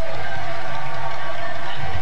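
Steady hum and hiss of an old home-camcorder soundtrack, with faint background music.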